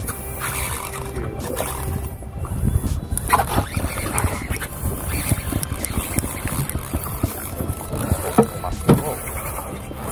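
Conventional jigging reel being cranked by hand, with irregular clicks and rattles from the reel and handle. Under it run a steady low hum and wind noise on the microphone.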